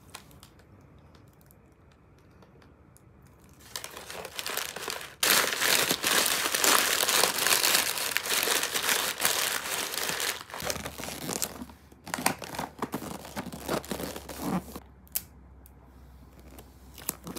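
Sheet of wrapping paper crinkling as it is handled and folded around a cardboard box. It is quiet for the first few seconds, and the crinkling starts about four seconds in and is loudest from about five seconds. After that it breaks into separate crackles and creasing ticks, then dies away near the end.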